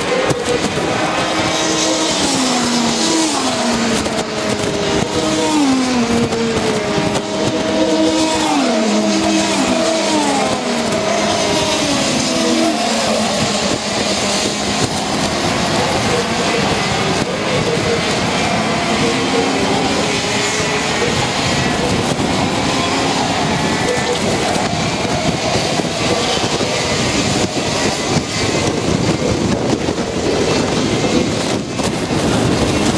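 Several racing kart engines running on a circuit. For the first dozen seconds their pitch drops sharply several times and then holds level, as the karts lift off and come back on the throttle. After that comes a denser, less distinct engine noise.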